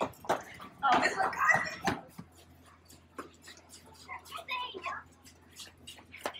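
A child's voice speaks quietly, louder about a second in and fainter near the end, with scattered light taps between.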